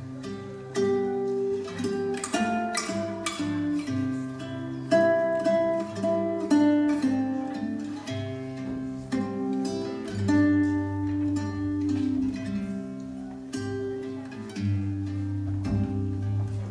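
Grand piano playing live: a melody of separate notes over a low bass line.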